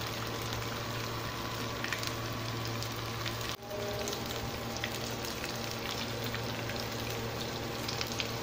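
Breaded lamb brains deep-frying in hot oil in a pan: a steady sizzle with fine crackling, which drops out for an instant about three and a half seconds in.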